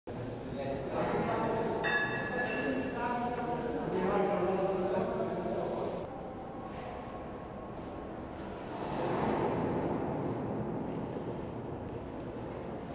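Indistinct voices, clearest in the first half, over a steady background din of an underground metro construction site.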